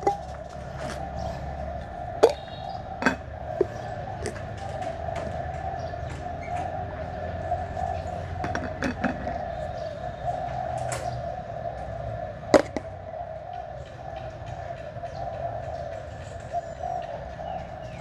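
Scattered sharp clicks and taps of a plastic box and glass jars being handled, the loudest about two, three and twelve and a half seconds in, over a steady, slightly wavering mid-pitched drone and low hum.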